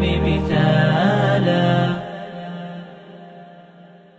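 The closing held note of an a cappella nasheed: layered male voices sustain the final chord over a deep drone. The drone drops out about half a second in, and the voices fade away over the last two seconds.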